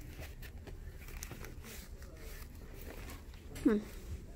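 Handbags being pushed aside on a wire-grid store rack: faint rustling and light clicks of handles and chains over steady store background noise, with a hummed 'hmm' near the end.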